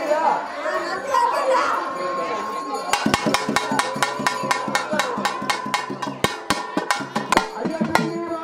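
Crowd voices, then from about three seconds in a run of sharp, fast hand-drum strokes at about five or six a second, which stops shortly before the end.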